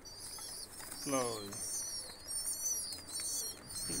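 Birds chirping in high, twittering calls throughout. About a second in comes one short pitched call that falls steeply.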